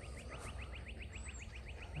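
A small bird's rapid trill: an even run of short rising chirps, about eight a second, over a low background rumble.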